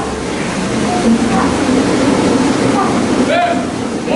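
Curve self-powered curved treadmills rumbling steadily as two men sprint on them, with a voice calling out briefly over the noise near the end.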